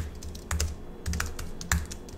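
Typing on a computer keyboard: a run of unevenly spaced key clicks as code is entered.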